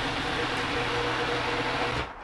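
Small electric food processor running steadily, blending tomatoes, onion, serrano peppers and cilantro into a raw salsa. It cuts off at the end, run in short pulses so the salsa is not overblended.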